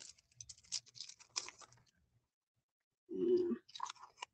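Light crinkling and crackling of a clear plastic storage sleeve as red rubber cling stamps are handled and peeled from it, a scatter of small crackles in the first second and a half. A brief spoken word comes near the end.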